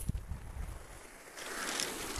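Small waves washing on a shingle beach, a hiss that swells about one and a half seconds in, with low rumbles of wind on the microphone.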